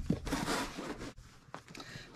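Paper and cardboard packaging being handled and slid on a table: a rustling scrape through about the first second, then fainter rustles.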